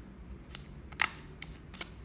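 Small sharp clicks from a Fitbit Alta HR fitness wristband being handled, its band and clasp worked by hand. There are several light clicks, with the loudest a double click about halfway through.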